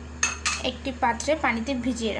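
A few knocks and scrapes of a spatula against a metal karahi while mung dal is dry-roasted in it, with a woman's voice talking over it.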